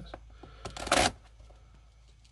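A cardboard mailing box being handled before it is cut open: a few light clicks and one short rustle of cardboard about a second in.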